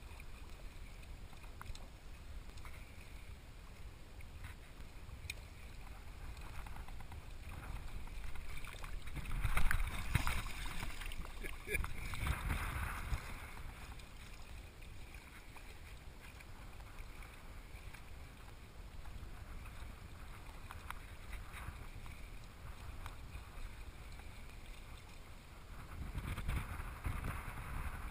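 Shallow seawater sloshing and splashing around a camera held at the surface, with heavier splashing from about eight to fourteen seconds in, loudest near ten seconds, where mating nurse sharks thrash at the surface.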